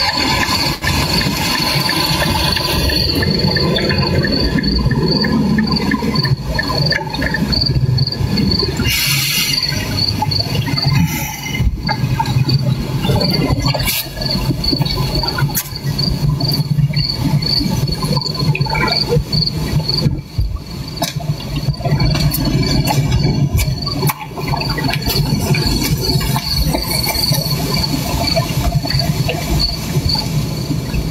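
A high, thin chirp repeating evenly throughout, insect-like, over a steady low rumble with scattered clicks.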